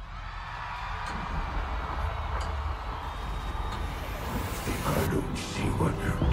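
Live concert intro starting out of silence: a deep bass drone builds under a screaming crowd, with a sweep rising in pitch about halfway through.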